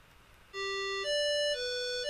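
Software synthesizer playing a simple music cue: after about half a second of near silence, plain electronic single notes begin, each held about half a second, stepping up and then down.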